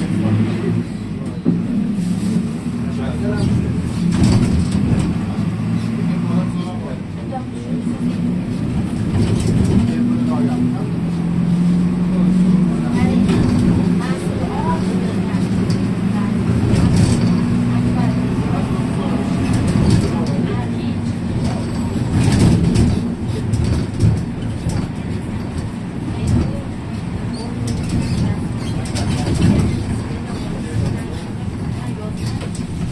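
Inside a city bus on the move: the engine runs steadily under road noise, with scattered rattles from the body and windows and voices of passengers talking in the background.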